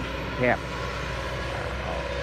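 Excavator's diesel engine running off in the background with a steady low drone.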